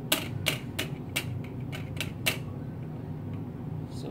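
A quick, irregular run of about seven sharp clicks in the first two seconds, then only a steady low hum.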